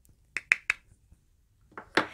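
Three quick, sharp clicks in about a third of a second from a cosmetic face powder container being handled and opened.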